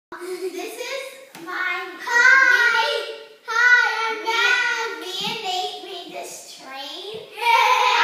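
A young child's high-pitched voice in sing-song vocalizing, with several long drawn-out notes separated by short pauses.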